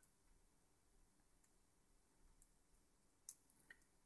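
Near silence, with a few faint clicks a little after three seconds in: a small push-button switch's legs being pressed into a circuit board.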